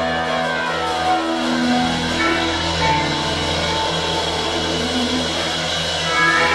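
Electric guitars and bass guitar playing long, ringing held notes over a steady low bass note, loud in a small rehearsal room.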